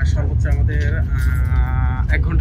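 Steady low rumble of a high-speed train running at speed, heard inside the passenger cabin. About a second in, a long held vocal note starts and carries on over the rumble.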